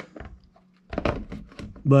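Light plastic clicks and taps as an Emerson digital thermostat is pressed and snapped onto its wall base: one sharp click at the start, then a quick run of small clicks in the second half.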